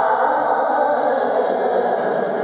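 Live Hindustani classical music in raag Shree: a male voice singing over a harmonium and a tanpura drone, with tabla accompaniment.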